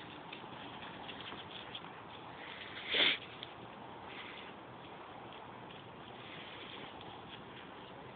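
Doberman and boxers playing tug-of-war over a toy: low scuffling and snuffling from the dogs, with one brief louder burst of noise about three seconds in.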